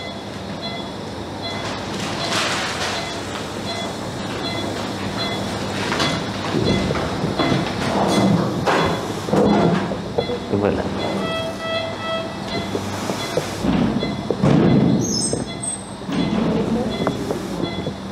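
Operating-room sound: a patient monitor beeping at a regular pace over a steady hum of equipment. A brief chime of several tones sounds about eleven seconds in. Muffled voices come and go.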